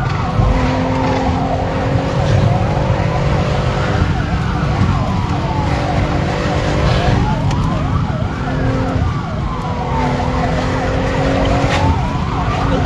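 Police siren wailing, its pitch rising and falling about every three and a half seconds, over a car's engine and road noise heard from inside the moving car during a chase.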